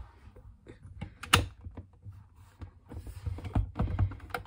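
Scattered small clicks and taps of a facemask and its screws being handled against a Schutt F7 football helmet's shell while the top facemask screws are fitted, with a sharper click a little over a second in and another near the end.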